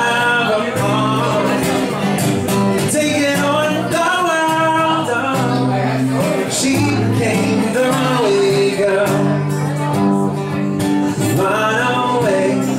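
A man singing a country-style song while strumming a steel-string acoustic guitar, solo and live.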